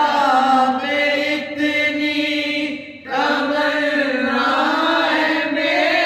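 A group of men singing a Sufi kalam together in qawwali style, with long held, wavering lines. The voices break off briefly about halfway through, then come back in.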